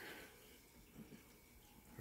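Near silence: room tone, with a couple of faint, short soft sounds about a second in.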